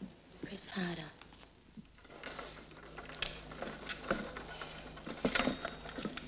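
A brief voice sounds about a second in, then a run of irregular light clicks and knocks, the sharpest of them near the end.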